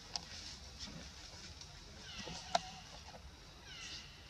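Baby macaque giving two high calls that fall in pitch, one just past the middle and one near the end, over a steady high hiss. A sharp click about two and a half seconds in is the loudest sound.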